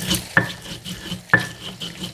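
Stone pestle crushing and grinding chilies in a stone mortar (ulekan and cobek): a gritty scraping, with two sharp stone-on-stone knocks about a second apart.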